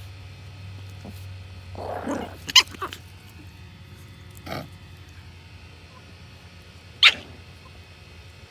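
Tiny chihuahua puppy guarding a toy: a short growl about two seconds in, then sharp yaps, a quick cluster just after, another a couple of seconds later and a last loud one near the end.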